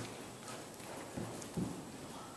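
Hoofbeats of a Thoroughbred horse walking on the soft dirt footing of an indoor riding arena: a few dull thuds, two of them close together just past the middle.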